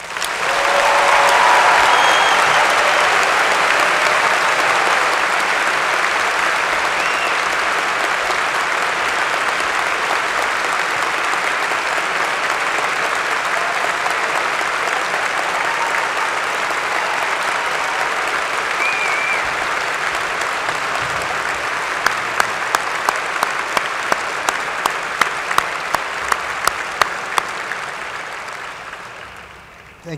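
Large audience applauding: a long ovation that starts at once, is loudest within the first two seconds and slowly dies away near the end. Late on, a run of sharp, evenly spaced claps, about two a second, stands out from the rest.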